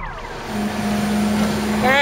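A flatbed tow truck's engine running steadily at idle, a constant low hum. It comes in about half a second in as the tail of music fades out, and a man's voice starts just before the end.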